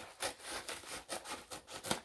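A bubble mailer being handled and opened: packaging rustling and scraping in an irregular run of short crinkles, the strongest just before the end.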